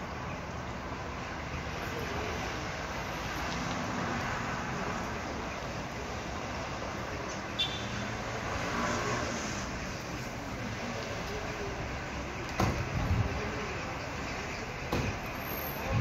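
Steady hum of town traffic noise, with a few dull low thumps in the last few seconds.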